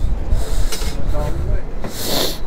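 Wind rumbling on the microphone, with brief rustling handling noises in the first second and faint voices in the background.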